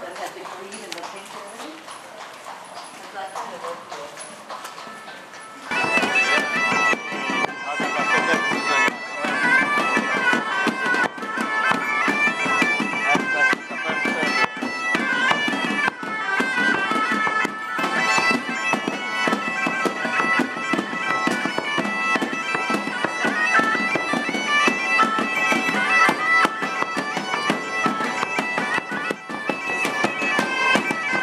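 A street band of bagpipes and drums, including hand drums and a stick-beaten drum, playing a lively tune. It starts suddenly, loud, about six seconds in, after a few quieter seconds.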